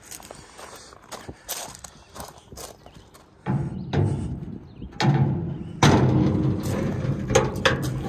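Footsteps on gravel. About three and a half seconds in, close rubbing and knocking from the steel side gate of a dump trailer and its latch being handled, louder in the second half.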